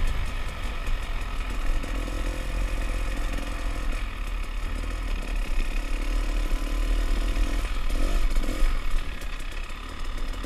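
Off-road motorcycle engine running under the rider as it crosses sand, with a deep rumble underneath. A couple of quick rising revs come near the end.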